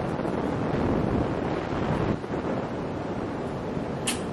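A steady rushing noise with no speech, like wind or rumble on the microphone.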